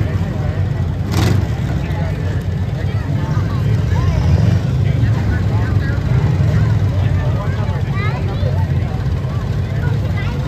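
Demolition derby cars' engines running together with a deep, steady rumble, with a short sharp bang about a second in.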